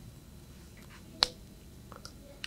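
A single sharp click about a second in, against quiet room tone, with a faint tick or two around it.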